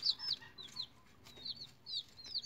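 Baby chicks peeping: short, high calls that slide down in pitch, a few at a time, with a brief lull in the middle.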